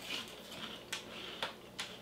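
Three faint, sharp clicks spaced about half a second apart in the second half, over quiet room tone.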